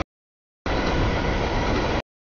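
CSX mixed freight train's cars rolling past on the rails at a grade crossing. The audio is cut to dead silence for the first half-second or so, then the train noise comes back until it cuts off abruptly at the end.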